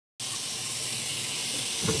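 Kitchen faucet running, a steady stream of water splashing onto the bottom of an empty stainless steel sink. It starts a moment in.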